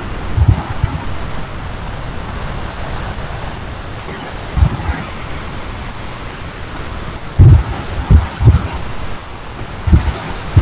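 Steady hiss of microphone noise on an online call, broken by a few short, low, muffled thumps, like bumps or breath on the microphone.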